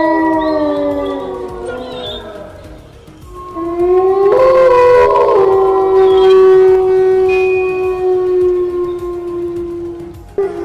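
Wolves howling. Several overlapping howls fall in pitch and fade away at the start. After a short lull, a new howl rises about three and a half seconds in, joined briefly by a second, higher voice, and is held on one long steady pitch until near the end.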